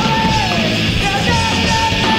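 A loud punk rock song playing, with a yelled, sung lead vocal over the full band.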